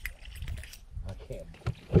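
Low rumble of handling noise with scattered light knocks and a faint murmured voice, then a sharper knock just before the end.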